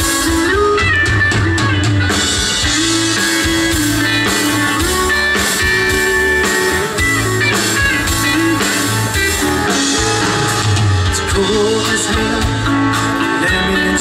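Live band playing a song through the stage PA: electric guitars, strummed acoustic guitar, bass and a drum kit over a steady beat, with keyboard.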